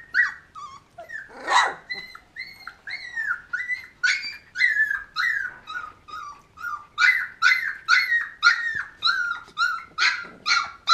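Golden retriever puppies, 20 days old, whining and yipping in a steady string of short, high-pitched cries as they play, about two a second. One louder yelp comes about one and a half seconds in.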